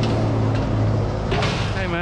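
A motor vehicle driving past close by: a steady engine hum that swells and fades, with a brief rush of tyre noise about one and a half seconds in.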